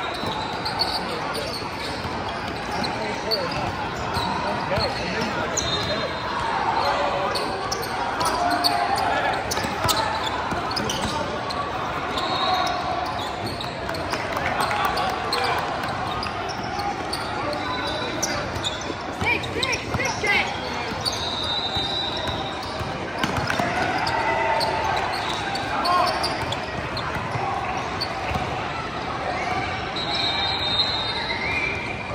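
Basketball game sounds on a hardwood court: the ball bouncing and dribbling, short high sneaker squeaks, and a continuous murmur of players' and spectators' voices, all echoing in a large gym.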